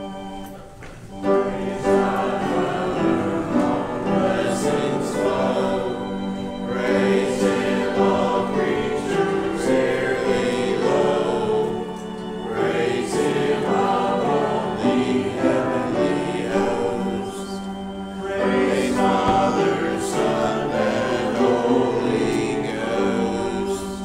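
Church congregation singing a hymn together over a sustained instrumental accompaniment, the singing swelling in about a second in after a short lead-in.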